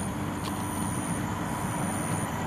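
Steady background hum of distant road traffic, with a thin, high, steady whine over it.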